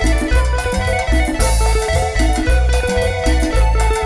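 Live band playing dance music through a loud PA system, with a steady repeating bass beat under sustained melody lines.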